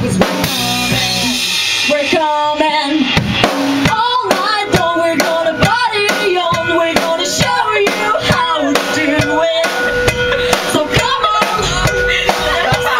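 Rock band playing an instrumental passage live: drum kit with bass drum and snare hits on a steady beat, under electric guitar and bass guitar.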